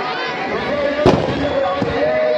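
A firecracker bang about a second in and a smaller pop near the end, from a burning Dussehra effigy packed with fireworks, over a crowd's shouting and chatter.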